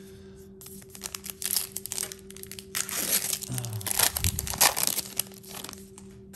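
Plastic wrapper of a trading card pack being torn open and crinkled: a run of irregular crackling and rustling that is busiest near the middle and dies away shortly before the end.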